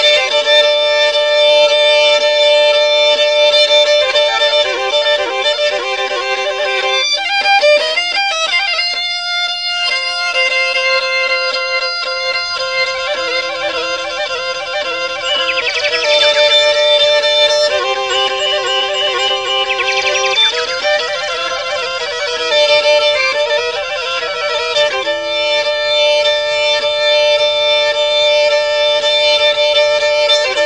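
Instrumental passage of a Turkish Black Sea folk song: a bowed fiddle plays a melody of held notes with quick ornamented runs, with no singing.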